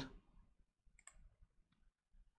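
Near silence, with a faint computer mouse click about a second in and a fainter one near the end.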